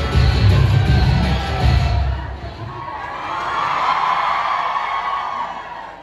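Haryanvi dance song with a heavy bass beat playing loudly over the sound system, cutting off about two seconds in. An audience then cheers and shouts for a couple of seconds before it fades.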